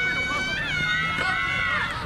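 A spectator's long, high-pitched cheering yell, held for nearly two seconds and trailing off near the end.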